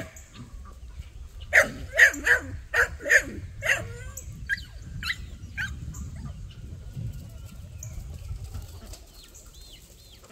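A flock of free-range chickens calling: a run of loud, harsh squawks from about one and a half to four seconds in, then softer clucks, with high thin chirps near the end.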